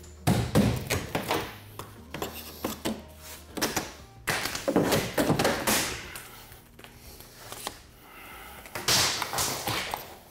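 Wood trim strips being pried off a countertop edge with a steel pry bar: a series of knocks and thunks in clusters at the start, around the middle and near the end, as the brad-nailed trim is forced loose.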